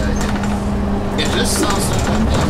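Gillig transit bus under way, heard from the driver's seat: a steady drone from the rear engine and drivetrain.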